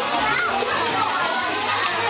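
A room full of young children's voices, talking and calling out over one another.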